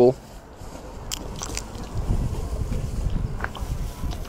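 A few short sharp cracks of sunflower seeds being split between the teeth and chewed, over a steady low rumble.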